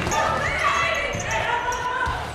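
Basketball game ambience in a gymnasium: voices echoing through the hall, with a basketball bouncing on the hardwood court.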